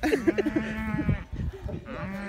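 Cattle mooing: one long, steady call of about a second near the start, with a man's laughter over its beginning, and another moo starting just at the end.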